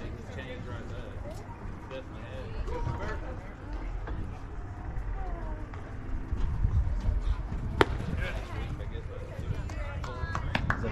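Ballpark sound with low background chatter and a low rumble of wind on the microphone; nearly eight seconds in comes one sharp smack of a pitched baseball at home plate.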